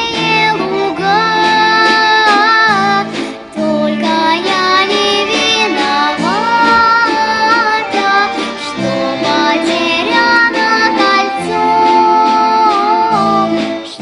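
A young girl singing solo with long held notes, accompanied by an orchestra of Russian folk instruments: plucked domras and balalaikas over a bass line.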